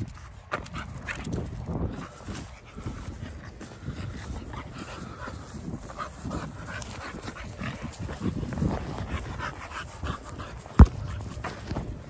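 A dog making vocal sounds, excited while waiting for its ball, with one sharp thump near the end.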